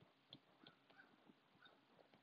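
Near silence broken by a few faint ticks of a stylus tip tapping on a tablet's glass screen while handwriting.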